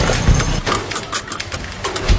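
A vehicle engine running with a low rumble, with irregular knocks and rattles over it.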